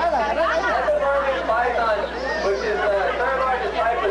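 Several people's voices talking over one another, unintelligible chatter.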